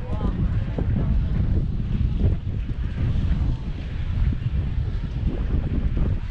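Wind buffeting the camera's microphone in a steady, gusting low rumble, with faint voices of people nearby.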